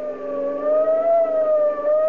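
Police siren sound effect wailing, its pitch slowly rising and falling, heard on an old, narrow-band 1930s radio broadcast recording.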